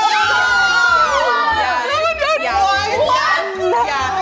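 A small group of young women and a man shrieking and cheering excitedly all at once, with many high, overlapping squeals that slide up and down in pitch.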